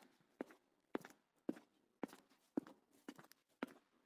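Footsteps on a hard concrete floor: slow, even steps at about two a second, each a short, faint knock.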